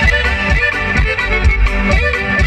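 Live norteño band playing an instrumental passage: button accordion and saxophone over a drum kit, with a steady beat.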